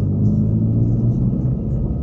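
Steady low engine and road rumble of a moving car, heard from inside the cabin.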